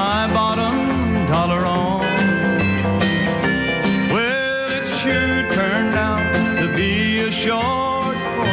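Country song performed live: a male lead voice singing over a country band with guitars and a bass line.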